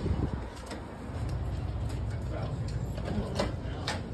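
A steady low rumble sets in about a second in, with handling noise from a phone carried while walking and a few light clicks near the end.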